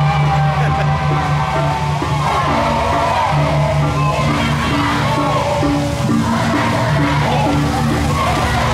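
Balinese processional gamelan (baleganjur) played live: gongs and gong-chimes beating a steady, evenly pulsed pattern of low notes, with crowd voices shouting over it.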